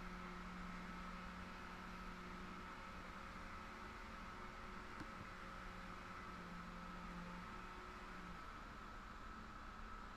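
Faint room tone: a steady hiss with a low electrical hum, and one faint click about halfway through.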